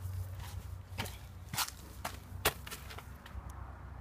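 Footsteps in sneakers on a dirt path strewn with dry leaves, a few separate sharp crunching steps.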